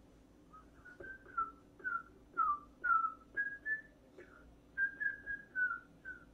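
A person whistling a tune: a string of short notes, several sliding slightly downward, at about two or three notes a second, starting about half a second in.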